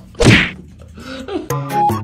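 A single loud thud about a quarter of a second in as a cat drops down from a wall and lands on the floor. Background music starts about one and a half seconds in.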